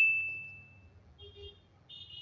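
A notification-bell 'ding' sound effect, one high chime that fades out over about the first second. Faint, brief high tones follow about a second and a half in and again near the end.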